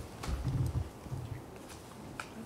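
Planning poker cards being handled and sorted in several people's hands, with faint clicks and a few dull knocks in the first second.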